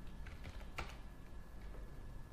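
A few faint, irregular computer keyboard key clicks as a password is typed, with one louder click a little under a second in.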